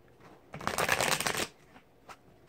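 A deck of oracle cards being riffle-shuffled: a rapid flutter of card edges lasting about a second, starting about half a second in.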